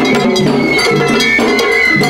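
Live Japanese festival hayashi music: bamboo transverse flutes play a high, wavering melody over drums, with a bright metallic clanging beat like a small hand gong.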